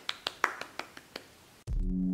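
A quick run of about eight light hand claps, growing fainter. Electronic intro music with a synth and drum-machine beat starts near the end.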